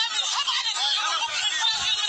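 Several men's voices in a crowd talking and calling out over one another, sounding thin and tinny as played back through a phone's speaker.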